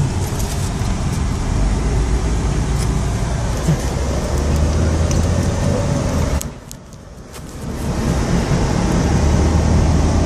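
Car driving slowly, heard from inside the cabin: a steady low engine drone with road noise, which drops away sharply for about a second and a half at around six and a half seconds in before coming back.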